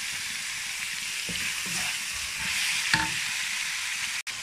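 Cucumber and pork sizzling in a wok as a wooden spatula stirs them: a steady frying hiss with a few scrapes of the spatula against the pan, and a sharper knock about three seconds in.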